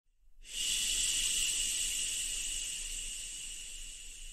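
A high hiss comes in sharply about half a second in and slowly fades.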